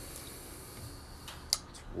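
A pause with faint, steady background noise and a single sharp click about one and a half seconds in.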